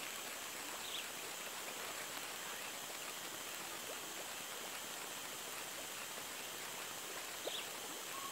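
Steady, even hiss of outdoor background noise, with two faint short chirps, one about a second in and one near the end.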